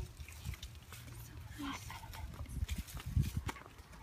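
Wind buffeting the microphone: an uneven low rumble with gusts and knocks, with a couple of brief, faint voice sounds in the middle.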